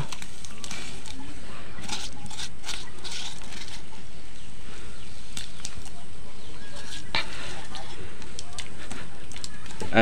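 Wood fire burning under a kadai of heated water on a clay stove: a steady hiss with scattered crackles and clicks, bunched about two to three seconds in and again around seven seconds.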